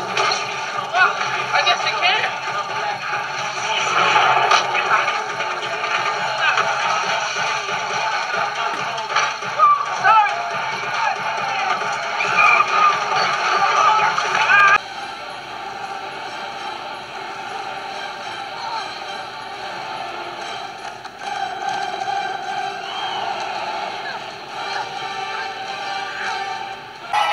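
Animated-film soundtrack: music under voices and action sound effects, cutting suddenly to a quieter, steadier passage about halfway through.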